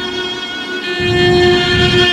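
De-tuned cello bowed in long sustained notes, several clashing tones held together at once; a low bowed note enters about a second in.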